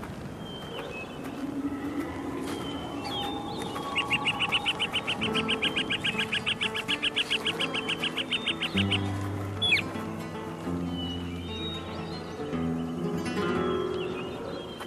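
Birdsong over a music score: scattered chirps, then a rapid high trill of about eight notes a second lasting some four seconds. Low bass and chord notes of the music come in about halfway through.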